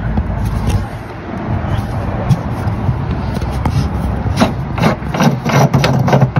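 Galvanized steel pipe cap being twisted off a galvanized pipe nipple by hand, its metal threads scraping. The scrapes come as a quick run of short rasps in the last couple of seconds, over a steady low rumble.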